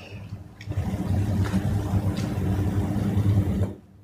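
A low, steady rumble with a faint constant hum over it, starting about a second in and cutting off abruptly shortly before the end.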